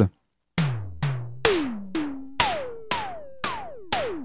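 Synthesized analogue-style tom-tom from Reason's Kong Drum Designer (Tom Tom module), hit about twice a second after a short silence. Each hit is a quick downward pitch sweep, and the tuning climbs from hit to hit as the pitch knob is turned up.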